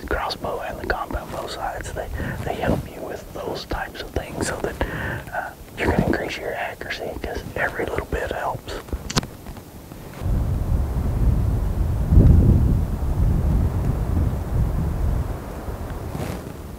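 Low, whispered talking for about the first ten seconds, then wind buffeting the microphone as a low rumble for most of the rest.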